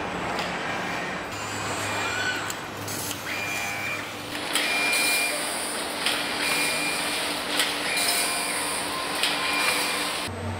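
Automated battery-pack assembly machinery with industrial robots running: a steady mechanical hum, joined about four and a half seconds in by a louder hiss, with short high beeps repeating several times, roughly every second and a half.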